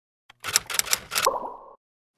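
TextExpander logo sound effect: a quick run of sharp clicks lasting about a second, the last of them joined by a short tone that cuts off.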